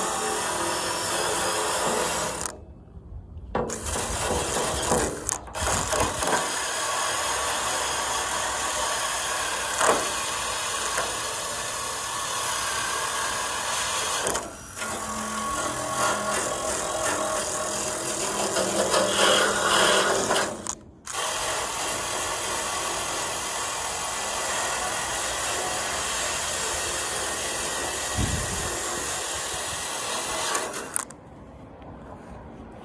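A handheld power tool stripping paint and rust from a metal panel, running with a steady abrasive grinding. It stops briefly three times: about three seconds in, near the middle and about two thirds through.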